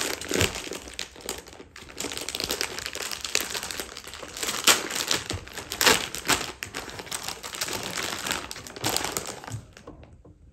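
Thin clear plastic bag crinkling as hands pull it open, a dense run of crackles that dies away near the end.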